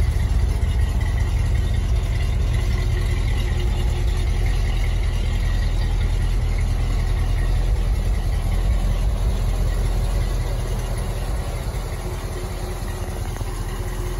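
350 small-block Chevy V8 in a 1949 Chevrolet 3100 pickup idling steadily, with no knocking or other odd noise: the engine is running healthily. It gets a little quieter about ten seconds in.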